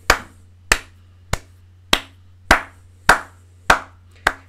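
A man clapping his hands slowly and evenly: seven single claps, a little under two a second.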